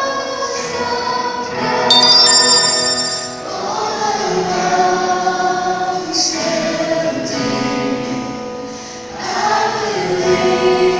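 Live church worship band playing a slow song: a man singing lead with women's voices joining, over electric guitar, bass and drums. A bright, high ringing run sounds about two seconds in.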